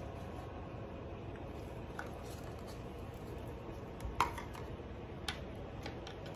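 A few light clicks and taps of small cups and craft supplies being handled on a table, over a steady low background hum.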